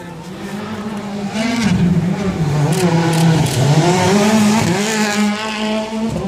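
Rally car engine revving, its pitch rising and dipping again and again as it works through the gears, growing louder about a second and a half in.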